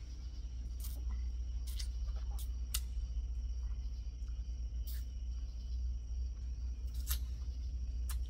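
Sucking on the bite valve of a hydration reservoir's drinking tube, making a handful of sharp, irregular clicks and smacks while no water comes through the line. A steady low rumble runs underneath.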